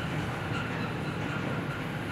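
Steady low background rumble of room noise, with a faint steady thin tone above it.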